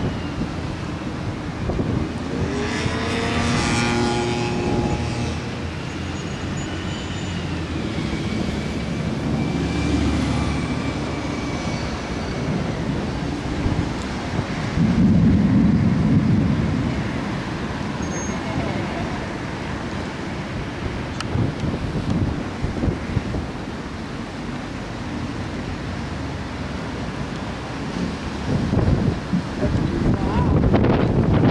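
Wind buffeting the microphone over a steady low roar, with passing road traffic: an engine note rises and falls a couple of seconds in. A louder low rumble swells about halfway through.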